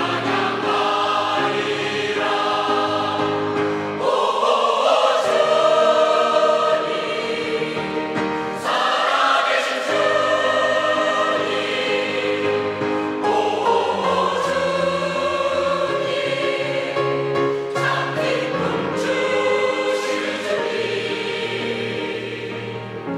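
Mixed choir of women's and men's voices singing a Korean-language hymn of praise in parts.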